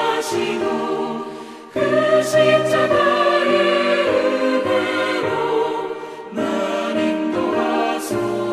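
A choir singing a slow hymn in sustained phrases, with short breaks between phrases about two seconds in and again about six seconds in.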